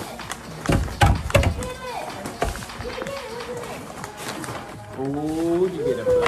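Paper gift bag and tissue paper crinkling and tearing in sharp bursts about a second in and again around two and a half seconds, over voices and background music. Near the end, a voice rises in pitch.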